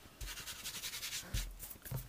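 A hand rubbing quickly across a work board, spreading a dusting of icing sugar, a fast run of dry brushing strokes for about a second. A soft thump follows, then a light knock near the end.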